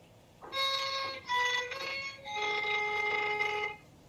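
A single melody instrument playing slow, held notes: three shorter notes starting about half a second in, then a longer, lower note that stops just before the end.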